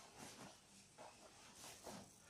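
Near silence, with a few faint, brief rustles of hands moving on the client's leg, foot and the towel beneath during a leg massage.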